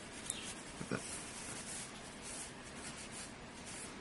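Faint rubbing of a tissue dampened with methylated spirits on a CPU's metal heat spreader, wiping off old thermal paste, with a light click near the start and a soft bump about a second in.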